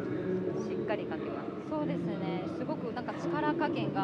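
Faint background voices of people talking over the steady hum of a busy exhibition hall.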